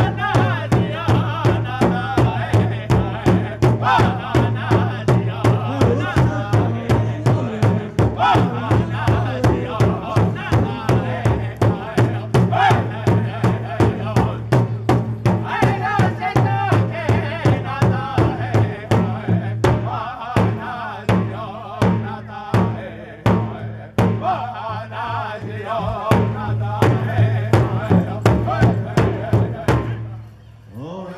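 Powwow drum group: several men striking one large shared hand drum together in a steady beat, about two strokes a second, while singing loudly. The beat thins for a few seconds about two-thirds through, then drum and song stop together at the end.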